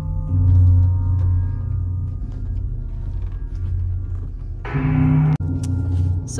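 Slow ambient music: a deep steady drone with held, ringing tones above it. A brighter, louder passage comes shortly before the end, then the sound cuts out for an instant.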